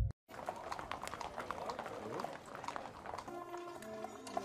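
Horses' hooves clip-clopping irregularly on a paved street as several ridden horses walk past close by. About three seconds in, music with long held notes joins them.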